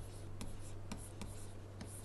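Stylus writing on a pen tablet: a handful of light taps and short scratches as a word is handwritten, over a steady low hum.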